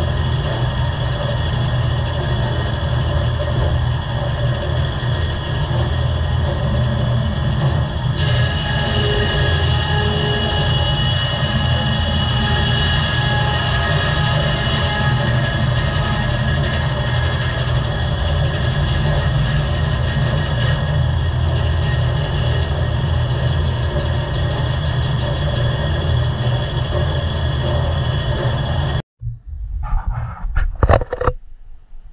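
Circle sawmill running, driven by its Cat diesel: a loud, steady heavy mechanical drone with a deep rumble and several steady whines from the spinning blade and drive. A brighter, higher whine joins about eight seconds in, and the sound cuts off abruptly just before the end.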